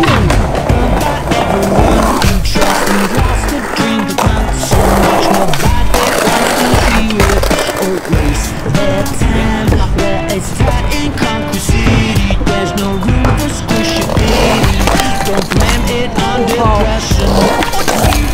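Skateboard wheels rolling, with sharp knocks of the board popping and landing, over a loud background music track.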